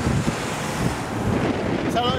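Strong gusty wind blowing across the microphone, a steady rushing noise that fills the gap between speech.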